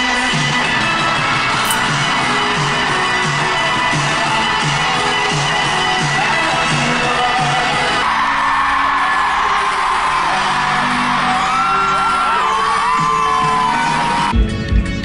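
Live pop concert recording: band music with a steady beat over a cheering crowd. About eight seconds in it cuts to another clip, where the crowd screams and whoops over the music.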